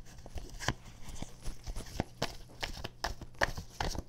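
A deck of cards being shuffled by hand: an uneven string of light card clicks and slaps, a few a second, busier in the second half.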